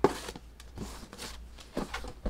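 A small cardboard gift box being handled as its ribbon is pulled off: one sharp knock right at the start, then light rustling and small taps.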